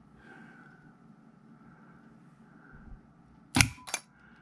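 Electric power solenoid firing when its trip switch is set off: two sharp clacks about a third of a second apart near the end, after a few seconds of quiet room tone.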